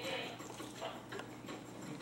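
Faint, irregular light taps of a small plastic spoon on a plastic sippy-cup lid, a toddler drumming with it.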